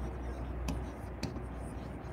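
Handwriting with a stylus on a touchscreen display: soft scratching strokes on the glass with a couple of sharp taps, over a steady low hum.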